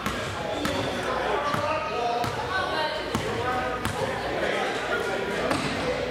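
A basketball bouncing on a hardwood gym floor, about six bounces roughly three-quarters of a second apart over the first four seconds, over people talking in the gym.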